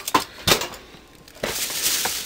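Packaged food and a bag being handled on a pantry shelf: a few short knocks, then a steady crinkly rustle from about a second and a half in.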